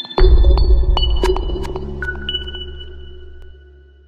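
Electronic intro music for a news channel's logo animation: a deep bass hit with clicks and several high tones that ring on and slowly fade away.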